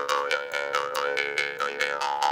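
Bamboo jaw harp (Balinese genggong) played in a fast, even rhythm, about six or seven twangs a second over a steady drone. Between twangs its bright overtones slide up and down as the player's mouth changes shape.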